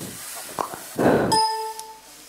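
A few short, dull bursts, the loudest just after a second in, followed by a single bell-like metallic ding that rings for about half a second.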